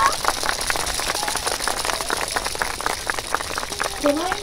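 Scattered, irregular sharp claps and clacks, about ten a second, over a faint steady hiss of outdoor crowd noise.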